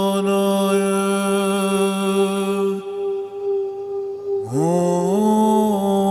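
Meditation music: a steady chant-like drone of held tones. About halfway through the lower tone drops out, then a low tone slides up in pitch, steps up again and is held briefly before the full drone returns near the end.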